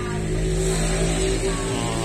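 A car engine running close by, a steady low drone that swells slightly at the start.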